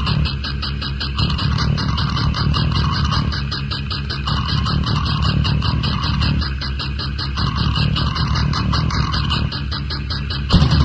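Lo-fi demo-tape recording of a heavy rock band: a dense, noisy distorted-guitar passage under heavy hiss, with no drums yet.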